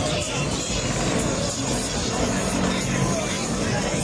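Background chatter and music mixed with a car driving slowly past.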